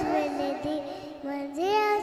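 A young boy singing a Sikh devotional kirtan passage into a microphone, his voice rising and falling, over sustained harmonium notes.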